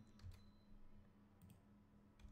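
Near silence with a faint room hum and a couple of faint computer mouse clicks.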